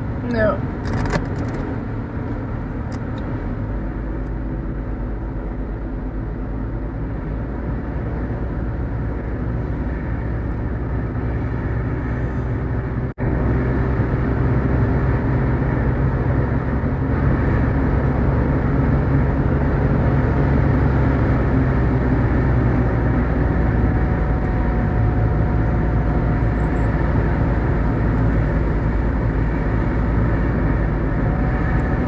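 Mercedes-Benz W124 car on the move: steady engine and tyre noise. A momentary cut in the sound about thirteen seconds in, after which it runs a little louder.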